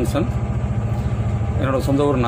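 A large vehicle engine idling with a steady low hum and an even pulse.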